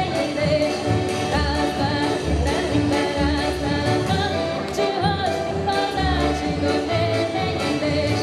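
A live Ukrainian folk band playing a song: a woman sings into a microphone over violin and piano accordion, with a drum keeping a steady beat.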